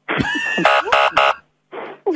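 A sound effect of a buzzer blaring three short blasts, after a brief gliding tone. On the radio this is a comedy 'wrong answer' sting that cuts in after a rude remark.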